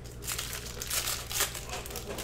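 Plastic crinkling and rustling as trading cards in clear plastic holders are handled, in several short bursts, the loudest about a second in and just under a second and a half in.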